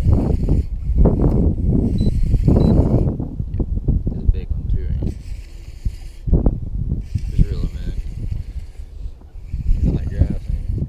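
A fishing reel being cranked while a hooked bass is fought on a bent rod. A loud low rumble fills the first three seconds, then it goes quieter, with scattered short clicks and knocks.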